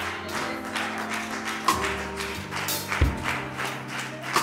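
Keyboard playing held chords that change about two and three seconds in, with a steady patter of light taps over them.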